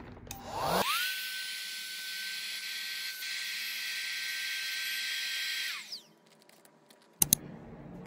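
Small handheld electric vacuum pump drawing the air out of a vacuum storage bag through its valve. It starts with a quickly rising whine that settles into a steady pitch with a hiss of rushing air, then is switched off about six seconds in and winds down. A couple of sharp clicks come about a second later.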